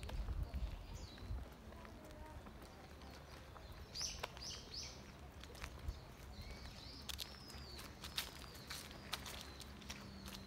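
Footsteps on a paved park path, with wind buffeting the microphone in the first second or so. Birds call overhead: three quick high chirps about four seconds in, and a long, thin whistled call near the end.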